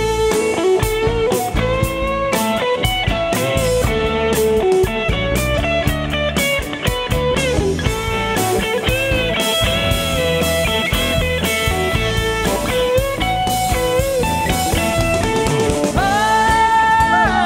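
Live rock band in an instrumental break: an electric guitar leads with bending notes over a drum kit's steady beat and bass.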